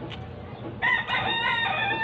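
A rooster crowing once: one long pitched call that starts just under a second in and runs on past the end.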